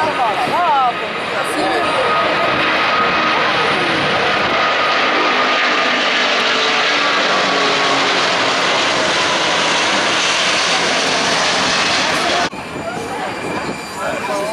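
Airbus A380-841's four Rolls-Royce Trent 970 turbofans at takeoff thrust, a loud steady jet roar as the airliner lifts off and climbs out. The roar drops away suddenly near the end, leaving voices.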